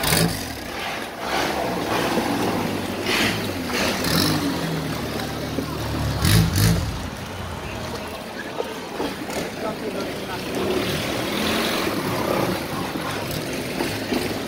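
A motorboat engine runs steadily as the boat moves along a canal, with rushing water and wind noise. The engine's low note fades about halfway through.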